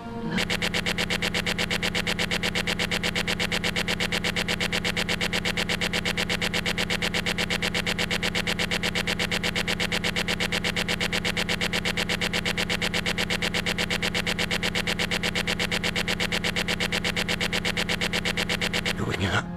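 A very short scrap of audio looped over and over many times a second, making a steady, mechanical-sounding buzzing stutter with a strong low tone that never changes.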